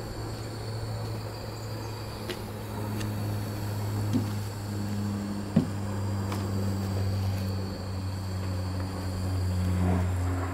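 Gas-fired boiler and small steam engine of a model steam launch running with a steady low hum that shifts slightly in pitch about halfway through and near the end, with a few faint clicks. The gas supply is running low.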